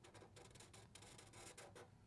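Faint scratching of a felt-tip marker drawing a curved line on paper, in many small, quiet strokes.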